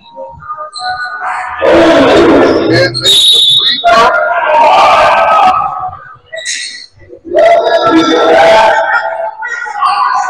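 Loud, unintelligible shouting from basketball players and spectators in three long bursts, with a referee's whistle blown briefly about three seconds in.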